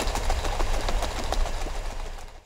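A glass mason jar of water and chopped buffalo gourd innards being shaken hard and fast, the water sloshing in a rapid, even rhythm. This is a shake test for saponins, and it whips the water into suds.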